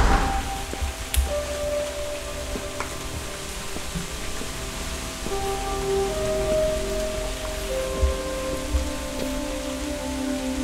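Steady rainfall with a slow film score over it: long held notes that move to a new pitch every second or two.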